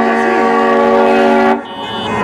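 Car horn held in one long steady honk that cuts off about one and a half seconds in.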